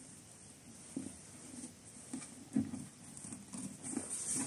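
Faint rustling and a few soft taps as a fabric ribbon is untied and drawn across a cardboard gift box.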